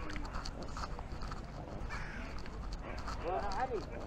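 People's voices over a steady low rumble, one voice louder near the end.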